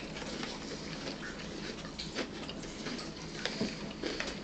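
Close-up chewing of celery with peanut butter: scattered small crunches and wet mouth clicks.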